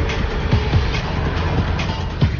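Suspenseful background music score with a few deep drum hits, each sliding down in pitch.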